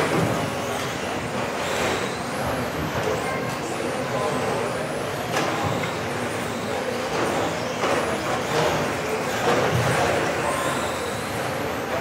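Radio-controlled electric touring cars racing on an indoor track: their motors whine up in pitch again and again as they accelerate, over a steady wash of car noise echoing in the hall.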